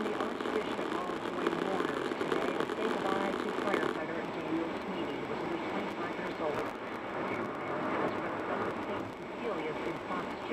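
A man talking on a news radio broadcast, his words indistinct. The sound turns duller about four seconds in.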